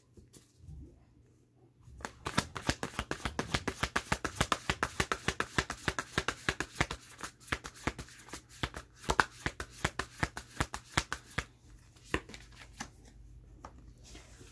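Tarot cards being shuffled by hand: a rapid run of small card flicks and slaps that starts about two seconds in, goes on for roughly ten seconds and then thins out.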